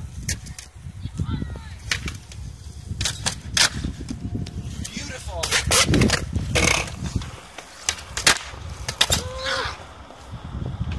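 Skateboard wheels rolling on concrete, with repeated sharp clacks of the board's tail and deck hitting the ground. Near the end the skater falls, with a sharp crack about eight seconds in as the skateboard deck snaps.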